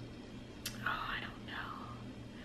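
A woman whispering faintly to herself for about a second, just after a single click. A steady low hum sits underneath.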